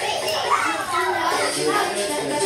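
Several children's voices talking and calling out over one another during a group game.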